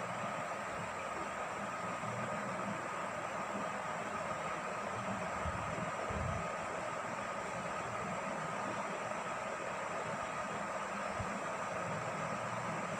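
Steady background hiss with a faint constant whine, and a couple of soft low thumps about halfway through.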